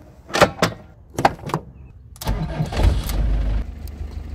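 A few sharp clicks and knocks, then a motorhome's engine starts a little past halfway and keeps running with a low rumble.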